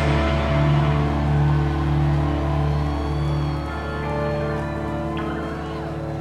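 Amplified electric guitars and bass holding sustained notes with feedback tones and no drums, the band's wall of sound slowly dying away.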